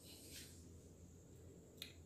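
Near silence: faint room hiss, with one brief faint click near the end.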